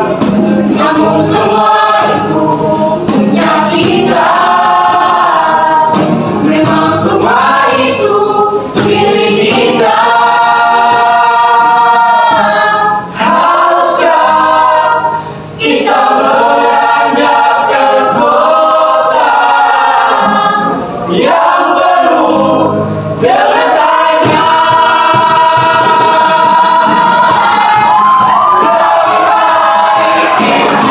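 Mixed vocal group of teenage girls and boys singing together in harmony. There are two short breaks in the middle, and a long held chord near the end.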